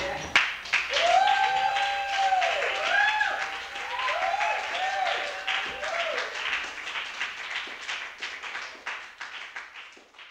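Audience applauding, with whoops and cheers over the clapping in the first several seconds; the applause then fades out.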